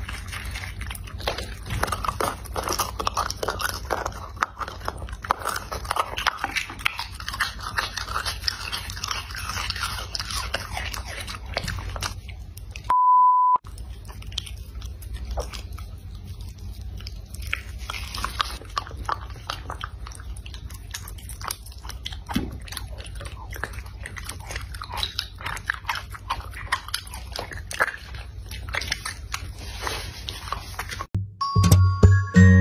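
A dog eating at close range: wet chewing, licking and smacking of soft jelly and raw food, with some crunches. A short steady beep about halfway through cuts briefly into the eating sounds.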